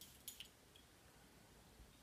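Faint short spritzes of a Miss Dior Silky Body Mist pump spray near the start, the mist being sprayed onto skin.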